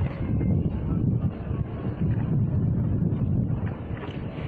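Wind buffeting a phone microphone at the waterside: an uneven, gusty low rumble.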